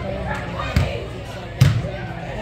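Two sharp thumps about a second apart, the second the louder, over voices and chatter in a large echoing indoor sports arena.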